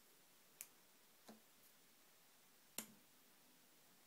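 Near silence with three faint clicks from the guitar amp's front-panel controls as the buttons and switch are worked; the loudest click comes a little under three seconds in.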